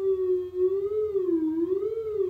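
Synthesizers.com Q169 oscillator sounding a steady triangle-wave tone, its pitch modulated by the LFO as the depth is turned up: about half a second in the pitch begins to waver slowly up and down, about once a second, a vibrato that grows deeper.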